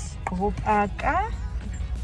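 A woman's voice making short vocal sounds, with a rising sing-song glide about a second in, over background music.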